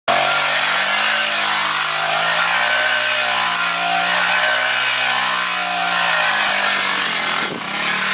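Honda XL 125 single-cylinder four-stroke engine running under throttle as the dirt bike spins donuts, its revs rising and falling in waves about every second and a half. A steady hiss runs under it from the rear tyre spinning on loose dirt. The sound dips briefly near the end.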